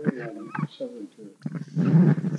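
A man's voice over a handheld microphone and PA, making drawn-out hesitation sounds rather than clear words.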